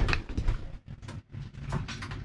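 A string of irregular light clicks and knocks as the camera is moved and handled inside a small wooden boat cabin.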